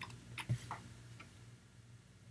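A few faint, scattered computer keyboard keystrokes, about five light clicks in the first second or so.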